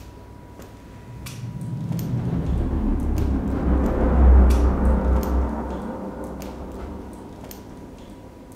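A deep, low rumble from the horror film's sound design swells up over a few seconds, peaks past the middle, and fades away. Faint scattered clicks run underneath it.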